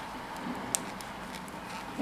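Knitting needles ticking softly against each other as stitches are worked in yarn, with one sharper click a little under a second in, over a low steady hiss.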